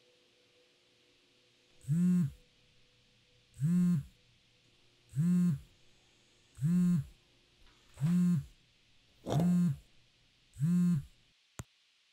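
Smartphone vibrating on a wooden countertop for an incoming call: seven low buzzes, each about half a second long, coming about every second and a half, the pitch swelling up and down with each one. A short sharp click follows near the end.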